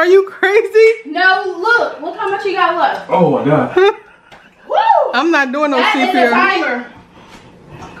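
People's voices making drawn-out, mostly wordless sounds, with one long, sliding cry about five seconds in: reactions to the burn of a super-hot chip.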